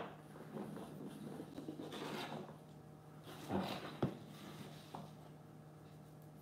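Thick painted cardboard puzzle pieces being handled, scraping and rubbing against one another, with a sharp knock just after four seconds and a lighter one about a second later. A faint steady hum runs underneath.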